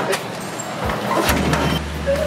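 Metal latch and bolt of a steel compound gate clanking a few times as the gate is unlocked and pulled open. A steady low hum sets in about halfway through.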